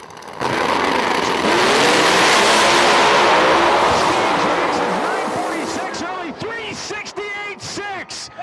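Two drag-radial pro mod race cars, one a nitrous-boosted 2016 Camaro, launch side by side with a sudden burst of engine noise at full throttle about half a second in. The noise is loud for several seconds as they run down the track, then fades as voices come up near the end.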